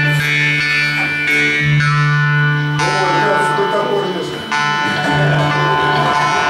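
Several jaw harps (Russian vargans) played together in a jam: a steady low drone with melodies of overtones shifting above it. The drone thins out in the middle and comes back about four and a half seconds in.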